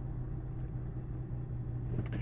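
A car's cabin noise: a steady low hum and rumble from the running vehicle, heard from inside the cabin.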